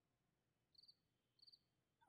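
Faint cricket chirping over near silence: two short trilled chirps, the second about two thirds of a second after the first.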